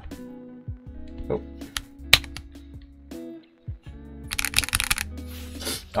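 Hands handling a mechanical keyboard: a few scattered clicks and knocks, the loudest about two seconds in, then a brief rustle of hands sliding about a second later, over soft background music.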